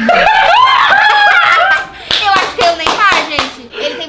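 Several people burst out laughing hard. Partway through, a few sharp hand claps come in among the laughter.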